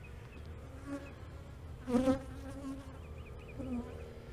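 Honey bee workers buzzing as they fly close past the microphone in several brief passes, the loudest about two seconds in.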